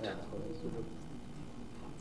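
Quiet room tone in a pause between a man's sentences, with a faint low tone held for about half a second shortly after the start.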